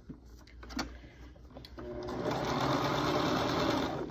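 Domestic sewing machine sewing a stretch stitch through fabric: it starts about halfway through, builds up to a steady run, and stops just before the end. A couple of faint taps from handling the fabric come before it.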